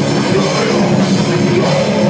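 Live metal band playing loud and without a break: electric guitar over a full drum kit.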